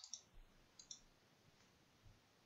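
A few faint computer mouse clicks in the first second, against near silence.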